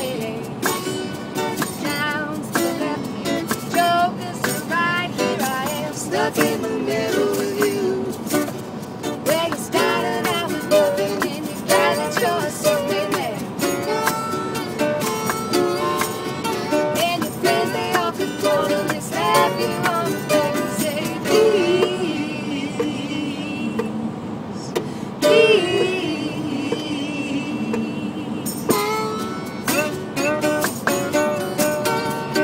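Acoustic band music: strummed acoustic guitar with hand percussion and singing, played and recorded inside a van's cabin. The high end thins out for a few seconds past the middle, then the full band comes back in.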